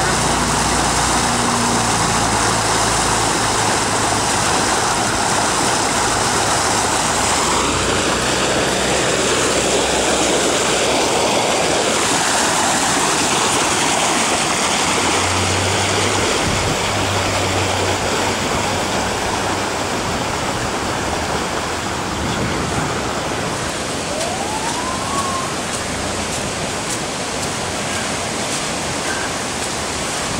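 Floodwater rushing and gushing, a steady, loud wash of water noise that eases slightly past the middle.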